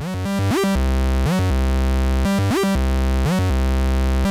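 A Eurorack VCO playing a sequenced synth bassline, sliding up between notes with portamento from slewed pitch CV. Each rise briefly jumps the pitch an octave higher, as a gate triggered by the rising pitch hits the VCO's FM input.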